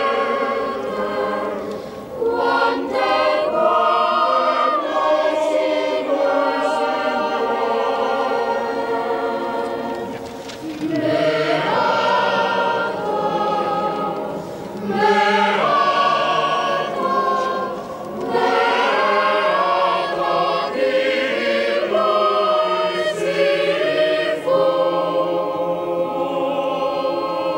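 Choir singing a slow sacred hymn for communion, in long sustained phrases with short breaks between them.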